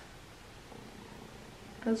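Quiet room tone: a faint, even background hum with no distinct sound events. A woman's voice starts again near the end.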